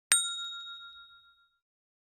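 A single bright bell-like ding, struck once and ringing out with several clear tones that fade away over about a second and a half.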